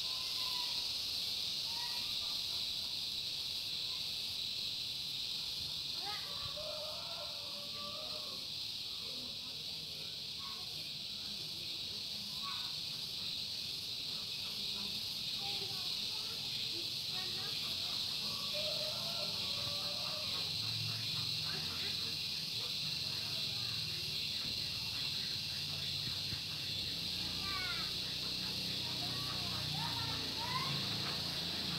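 Outdoor background: a steady high hiss throughout, with faint distant voices now and then.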